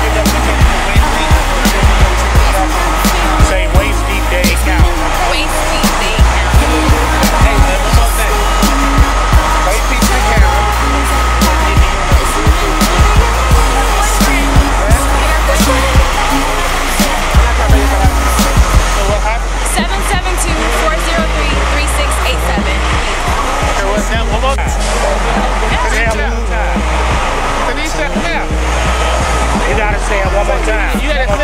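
Loud music with heavy bass and a steady beat, with people talking over it; the beat's sharp hits fall away about two-thirds of the way through.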